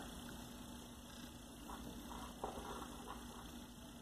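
Faint steady hum with a few soft clicks from small metal motor parts being handled, as a spring washer is fitted onto a brushless motor's rotor shaft.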